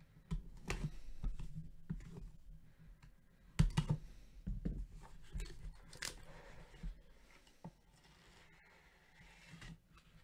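Cardboard trading-card hobby box being opened by hand: the seal sticker is cut, then a run of scrapes, taps and clicks, with a cluster of louder knocks about three and a half seconds in as the lid comes off.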